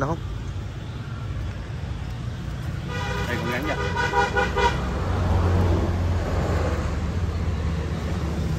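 Road traffic with a vehicle horn sounding one steady multi-tone blast of nearly two seconds, about three seconds in. A low engine hum from a passing vehicle swells after it.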